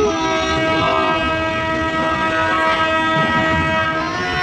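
Train horn sounding one long steady blast, heard from inside a moving passenger carriage, cutting off near the end; the low rumble of the train running on the rails lies underneath.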